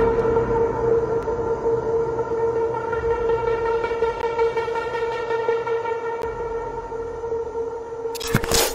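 Background electronic music holding one long steady synth drone with overtones over a low rumble, slowly fading.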